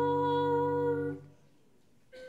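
Sung church music: one held sung note over a sustained low chord, ending a little past a second in, then a brief pause near silence.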